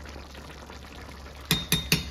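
Picadillo simmering in a cast-iron skillet with a soft, even bubbling hiss over a low steady hum. About one and a half seconds in, a spoon knocks against the skillet three or four times in quick succession, each knock with a short ring.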